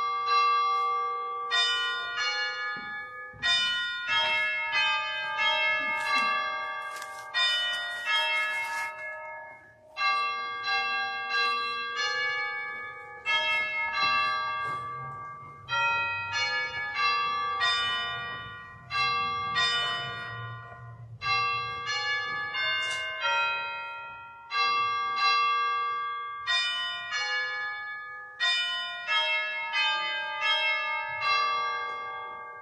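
Church bells ringing: several bells of different pitch struck in quick succession, each group ringing on and fading as the next strikes come about every one and a half to two seconds.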